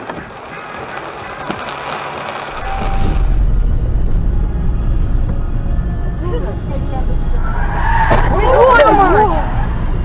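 Wet road hiss recorded inside a car by a dashcam for the first couple of seconds. Then the steady road and engine rumble of a car driving, with loud wavering high-pitched sounds building in the last few seconds as a collision with a small truck ahead unfolds.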